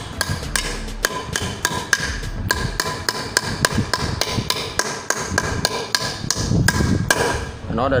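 Steel claw hammer striking nails at the metal base plate of a satellite-dish mounting pole on a wooden plank. The blows come steadily, about three a second, each with a short metallic ring.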